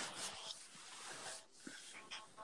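A sharp click, then about a second and a half of faint hissing rustle that fades out, as a phone is picked up and handled.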